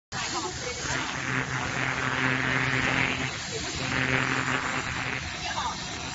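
Handheld laser cleaner ablating rust from a steel block: a buzzing hiss with a steady low hum, swelling in two passes, one from about a second in to past three seconds and a shorter one around four seconds.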